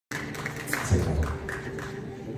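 Live band on stage before the song starts: a few scattered taps and a low thud about a second in, over a faint held note.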